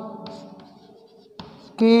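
Chalk writing on a blackboard: faint scratches and taps of the chalk strokes as words are written, with a spoken word starting near the end.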